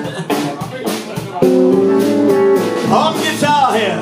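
Live rhythm and blues band playing: electric guitars and bass over a steady drum beat, with notes held from about a second and a half in.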